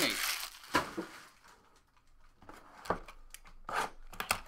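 Plastic trading-card packaging crinkling and rustling in the hands. Several short, sharp tearing rips come in the last second and a half, after a quieter moment in the middle.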